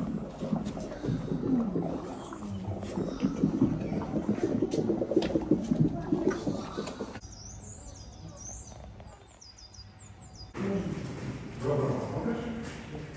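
Indistinct chatter of visitors, adults and children, with no clear words. About seven seconds in it gives way to a quieter stretch of quick, high-pitched chirping calls, and the chatter returns near the end.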